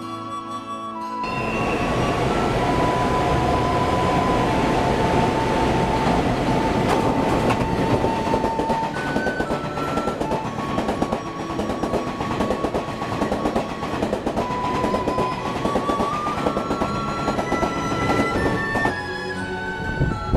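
Taiwan Railway passenger train running past close by: a loud rushing rumble with wheels clattering over the rail joints, coming in about a second in and dropping away near the end. Background music with a gentle melody plays over it throughout.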